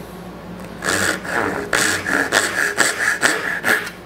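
Brass-backed dovetail saw cutting a small walnut scrap, starting about a second in with quick back-and-forth strokes, about three a second.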